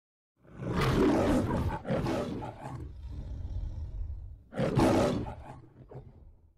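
The MGM studio logo's lion roar: two loud roars back to back in the first three seconds, a lower rumbling growl, then a last roar about four and a half seconds in that fades out.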